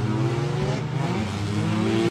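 Two drift cars, one a Nissan GT-R, with their engines revving hard through a tandem drift, the pitch wavering and climbing toward the end.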